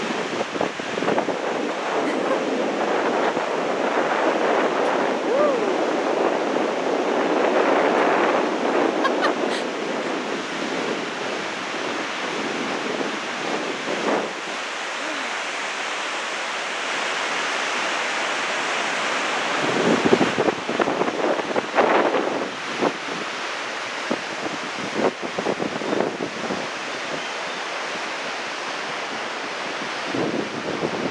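Steady rushing of a whitewater mountain river in the gorge below. Wind buffets the microphone in gusts, strongest about twenty seconds in.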